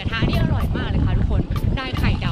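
A woman's voice, talking or laughing excitedly, over a steady low rumble of wind on the microphone of a moving bicycle.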